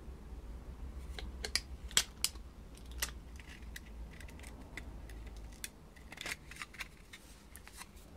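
Scattered sharp metal clicks and taps as a piston with its rings fitted is handled and seated into a band-type piston ring compressor, the loudest click about two seconds in. A steady low hum underneath fades after about six seconds.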